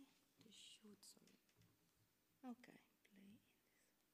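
Faint, low voices whispering and murmuring briefly, with a few soft hissing 's' sounds.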